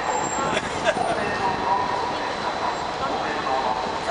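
Busy city street ambience: steady traffic noise with indistinct chatter of people nearby and a few small clicks.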